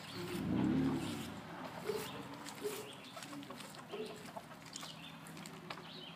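Backyard hens clucking, with a louder, longer low call in the first second followed by short single clucks every second or so.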